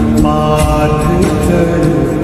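Devotional Hindu music for Hanuman: a chanted bhajan vocal with held notes over instrumental accompaniment, with regular percussion strokes.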